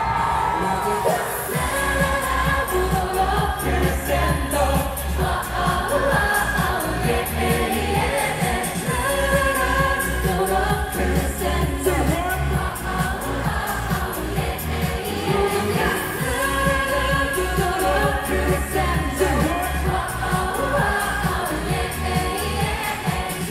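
Live pop performance through a concert PA: a woman singing into a microphone over a backing track with a heavy bass beat. The bass comes in right at the start.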